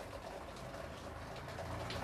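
Faint scraping of a marker writing on a whiteboard, over a low room hum.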